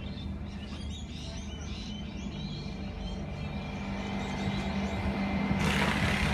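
Small birds chirping over a steady low machine hum, with a brief rush of noise near the end.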